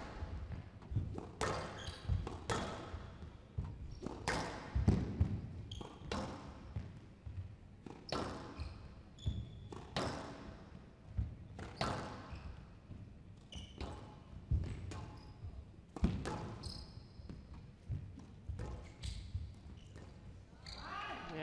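Squash ball being struck by rackets and hitting the court walls in a continuous rally, a sharp crack about once a second. Short high squeaks of shoes on the court floor come in between the hits.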